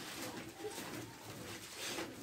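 Faint, low cooing of a pigeon.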